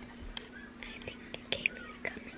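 A child whispering softly close to the microphone, with a few small clicks of the camera being handled and a faint steady hum underneath.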